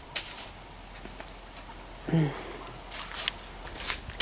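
Light footsteps on a paved garden path, with a brief vocal sound about two seconds in.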